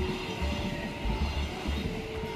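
A train running along the track: a steady rumble with irregular low thumps from the wheels on the rails.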